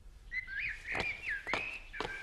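A songbird singing a warbling, whistled song, with two sharp footsteps about a second in.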